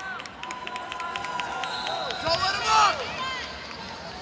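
Arena crowd noise: spectators' voices and scattered shouts, with a louder call or cheer near three seconds in.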